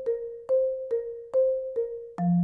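Marimba played with four mallets in single independent strokes, about five struck notes alternating between two neighbouring pitches, each bar ringing briefly and fading before the next.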